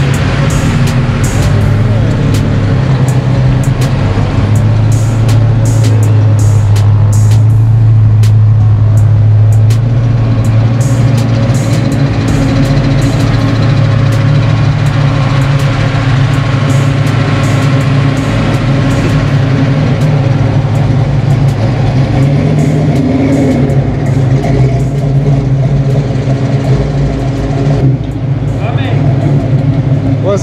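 A Fox-body Ford Mustang's engine idling close by: a loud, steady low drone that holds without revving.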